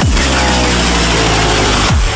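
Electronic dance music: a held deep bass under tones that slide slowly downward, with a kick drum at the start and another at the end.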